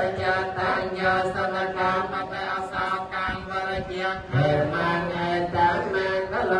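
Buddhist chanting in Pali, a steady recitation on held pitches without pause.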